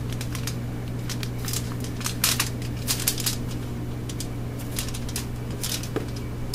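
Aluminium foil crinkling and clicking under fingers as a log of modeling clay is pressed down onto it, a scatter of short sharp ticks over a steady low hum.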